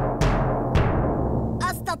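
A toy drum beaten with sticks: two booming strokes, the second less than a second after the first, each ringing on and dying away. A child's voice starts near the end.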